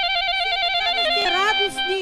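Live wedding-band music: a high melody note trilled rapidly between two pitches, with a quick rising run a little past the middle, under voices of people talking.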